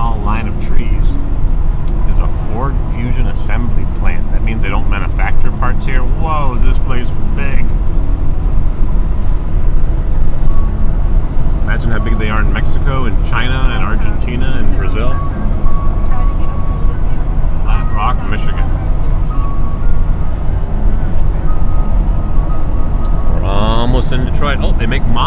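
Steady road and engine rumble inside a vehicle cruising at highway speed, with voices heard off and on over it.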